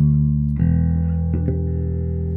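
Electric bass played through a DSM & Humboldt Simplifier Bass Station preamp with its cabinet simulator engaged. One low note is ringing, then a lower note is plucked about half a second in and left to sustain.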